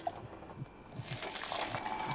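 Cooking water and boiled azuki beans pouring from a pot into a stainless mesh colander, a steady splashing that starts about halfway through after a quiet first second.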